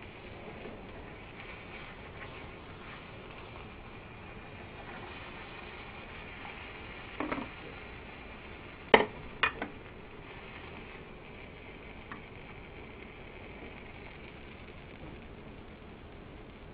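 An omelette sizzling faintly in a nonstick frying pan. There are a few sharp clacks of a spatula and crockery against the pan and plate, one at about seven seconds and a louder quick cluster about nine seconds in, as the omelette is lifted out.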